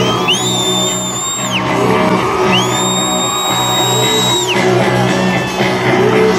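Live rock band playing at full volume, heard from the audience, with two long, high sustained lead notes that bend up into pitch at their start over the drums and bass.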